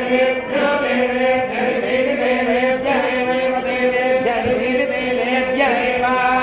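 Hindu wedding mantras chanted continuously in long held notes, moving between a few steady pitches with small glides.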